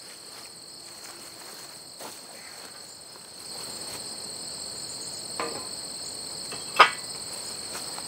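Steady high-pitched chorus of insects, a continuous trill at two pitches. Over it, a few light knocks and one sharp clank near the end as a steel frame rail is handled and laid onto the cultipacker.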